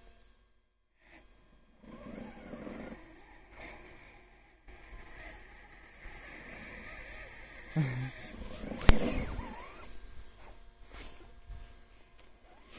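Scale RC crawler truck driving through deep snow: its small electric motor and drivetrain working in spells while the tyres churn the snow, with a sharp click nearly nine seconds in.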